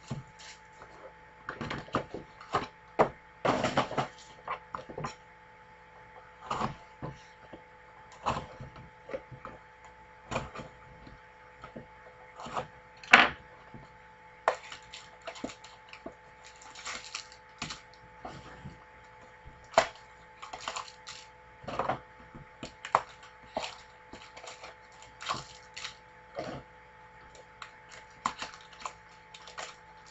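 Plastic shrink wrap and trading-card pack wrappers crinkling and tearing, with irregular crackles and rustles of card handling over a faint steady hum.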